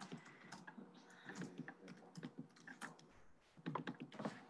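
Faint typing on a computer keyboard: irregular keystrokes and clicks.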